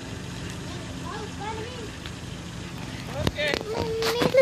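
Car engine idling with a steady low hum, and voices briefly over it.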